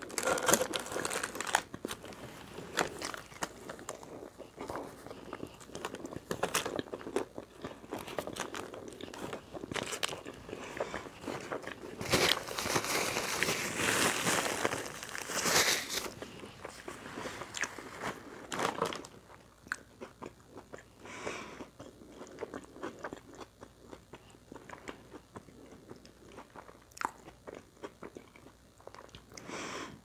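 A person biting into and chewing a Taco Bell chalupa, eating close to the microphone with crunching and wet mouth clicks. A louder, denser run of crunching comes about twelve to sixteen seconds in.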